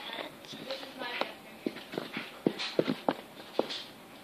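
A run of short, irregular taps and knocks from hands handling things close to the microphone, about seven in under three seconds, the loudest near the middle.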